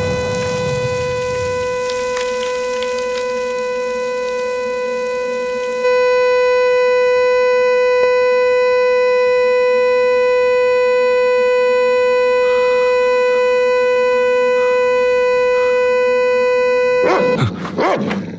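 Car horn sounding one steady, unbroken tone, held on by the weight of the injured driver slumped against the steering wheel after a crash. It gets louder about six seconds in and cuts off about a second before the end, followed by a dog's short rising and falling cries.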